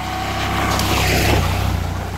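A motorcycle riding past on a gravel track. Its engine runs steadily and grows louder as it approaches, with a rush of noise at its loudest about a second in, then eases slightly as it goes by.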